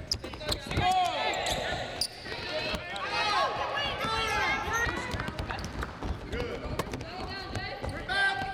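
Basketballs bouncing on a hardwood court, with many sharp clicks and sneakers squeaking as players run and cut, and players' voices calling out.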